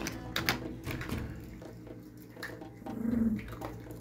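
A small dog gives a short, low growl about three seconds in, while being handed small treats. A few light taps come near the start.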